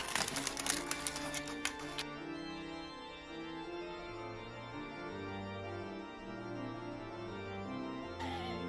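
Slow organ music with long held notes changing pitch. During the first two seconds it is overlaid by a quick run of crisp snips from small scissors cutting through parchment paper.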